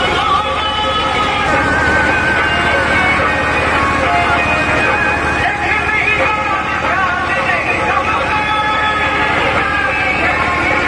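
Loud, dense crowd noise: many voices talking and calling over each other at once, with a steady low hum underneath.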